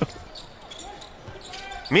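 Basketball arena sound during play: a low, steady crowd murmur with the ball bouncing. The play-by-play commentator's voice cuts in just before the end.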